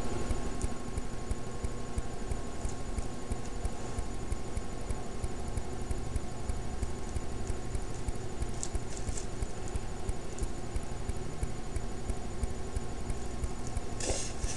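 Steady low, pulsing background noise with a thin steady whine, and a brief soft rustle of synthetic wig hair being handled about nine seconds in.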